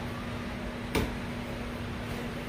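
Quiet room tone with a steady low hum and one short faint click about a second in.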